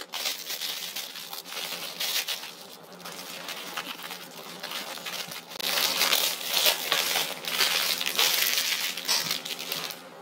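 Clear cellophane treat bag and wrapped candies crinkling as candy is dropped in and the bag is twisted shut. The crinkling grows louder in the second half, while the bag is twisted.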